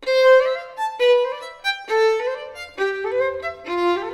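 Solo violin playing a descending sequence: a stronger low note roughly once a second, each followed by a few quick, lighter higher notes. Fast bow on the low notes and little bow on the quick notes give the line a springy lilt.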